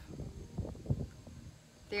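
A pause between words: a low, uneven rumble with a few soft knocks, one sharper about a second in, before a woman's voice starts near the end.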